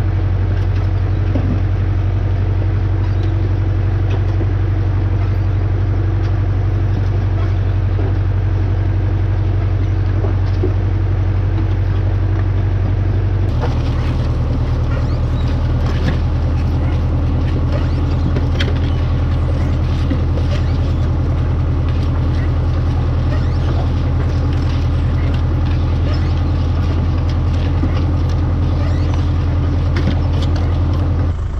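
Tractor diesel engine running steadily as it pulls a cup-belt potato planter, with light clicking and rattling from the planter. About halfway through, the drone shifts slightly in pitch and the clicking becomes more noticeable.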